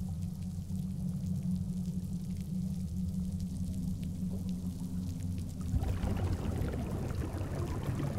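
Underwater sound on a deep reef: a low steady drone with a faint crackle, and a scuba diver's exhaled bubbles rushing out from about six seconds in.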